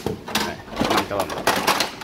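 Plastic clicks and clacks from the humidifier tray and its round filter wheel being pulled out of a Sharp air purifier, several sharp knocks over two seconds.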